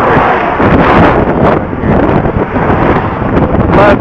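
Wind buffeting a body-worn camera's microphone: a loud, steady rushing noise.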